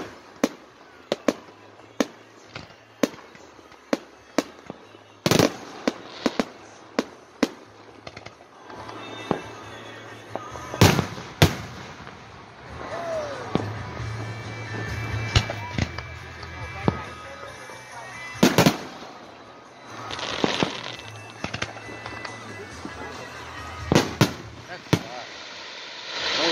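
Aerial fireworks going off: a string of sharp bangs, roughly one every half second to second at first. Louder reports come at about five seconds in, twice close together around eleven seconds, and again around eighteen and twenty-four seconds.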